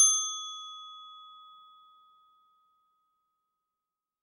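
A single high bell-like ding, struck once and ringing out in a long fade over about two to three seconds.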